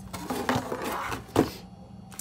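Rustling and sliding of a paper pad and packaged craft supplies being cleared off a table by hand, with one short, sharp, loud sound about one and a half seconds in.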